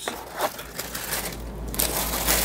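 Clear plastic bag crinkling as a bagged power adapter cord is pulled out of a cardboard box and handled, a steady crackly rustle that gets brighter near the end.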